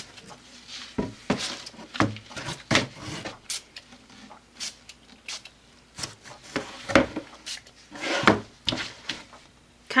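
Quick spritzes from a pump spray bottle of teal ink spray misting onto a canvas: many short hisses at irregular intervals, about two a second.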